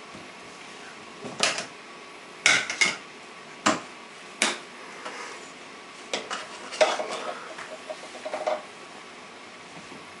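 Toy pots, pans and utensils clattering against a child's play kitchen: a string of separate clanks and knocks, then a quicker run of them near the end with a brief metallic ring.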